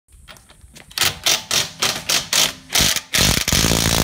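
Impact wrench hammering in short trigger bursts, about four a second, then running on continuously for about a second near the end.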